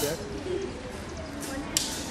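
A bird cooing: a few short, soft low notes, with people's voices behind and a sharp click near the end.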